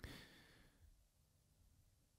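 Near silence, with a faint, short breath into a close microphone at the start.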